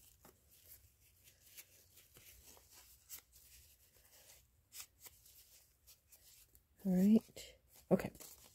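Faint rustling and crinkling of paper and cardstock being handled and folded, with small scattered clicks. A short wordless vocal "hm" sounds about seven seconds in.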